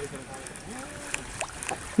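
A steady low wash of wind and water noise around a small boat, with a few faint clicks in the second half and a brief low murmur of a man's voice.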